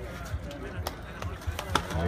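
Running footsteps on asphalt: a few sharp footfalls about half a second apart in the second half, over faint background voices.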